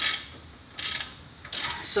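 Socket ratchet clicking in three short runs about half a second to a second apart, as the 19 mm bolts holding the hub to the coilover are turned.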